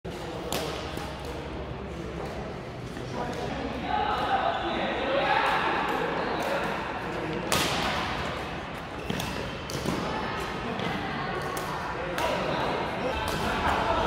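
Badminton rackets striking a shuttlecock during a doubles rally, sharp hits at irregular intervals echoing in a large sports hall, with voices in the background.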